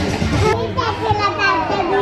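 Restaurant chatter, with a young child's high, wavering vocalising starting about half a second in.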